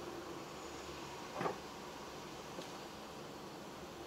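Steady low hiss and hum of a car's cabin while it drives slowly, with one short knock about one and a half seconds in and a faint tick a little later.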